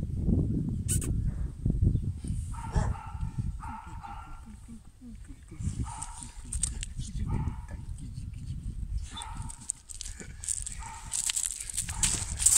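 Dogs vocalizing in short calls about half a second long, repeated several times with pauses between them, over low rumbling noise.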